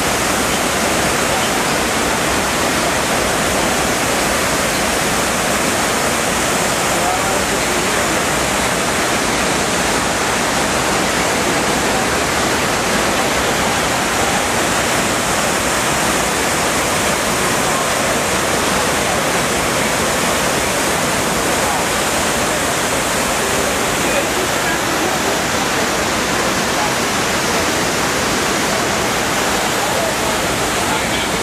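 Steady, loud rush of water falling down the walls of the 9/11 Memorial reflecting pool, a large man-made waterfall cascading into a square basin.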